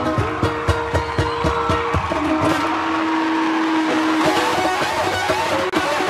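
Solo ukulele played fast: a quick run of plucked notes for about two seconds, then one note held for about two seconds, then more notes.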